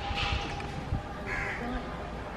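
Two short, rasping bird calls about a second apart.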